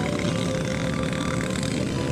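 A motorcycle engine running steadily, under an even rush of wind noise.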